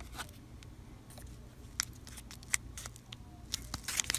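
Waxed-paper wrapper of a 1987 Topps baseball card wax pack being handled and fingered open: faint, scattered crinkles and clicks, bunching into a few sharper crackles near the end.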